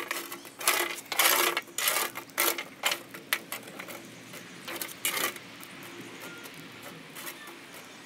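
Metal charcoal tongs picking up and setting down lit charcoal briquettes on a steel table, briquettes clinking and scraping against each other and the metal. The clinks come in a quick clatter for about the first three seconds, then only a few scattered ones.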